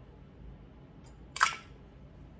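Pump dispenser on a glass foundation bottle pressed once: a short, sharp click-and-squirt about one and a half seconds in, just after a faint tick.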